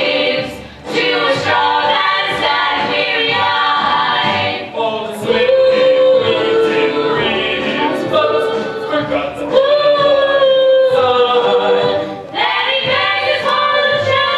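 A musical-theatre song: voices singing with a live pit orchestra. There are two long held notes in the middle of the passage and a brief drop in volume near the start.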